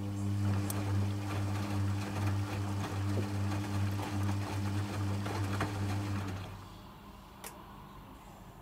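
Logik L712WM13 washing machine turning its drum through the final rinse: a steady motor hum with wet laundry and water sloshing, cutting out about six and a half seconds in as the drum comes to rest. A single faint click follows near the end.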